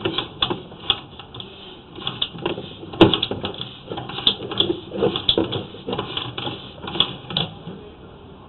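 Sewer inspection camera gear clicking and knocking irregularly as the camera is pushed along the pipe, with one sharp knock about three seconds in.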